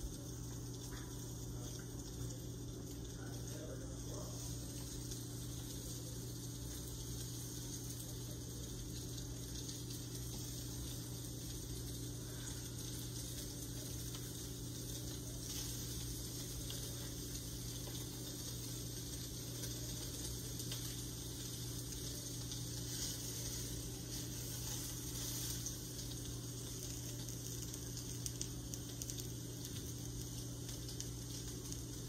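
Steady kitchen background noise: a low hum under an even hiss, with faint clicks and rattles of a plastic food container being handled.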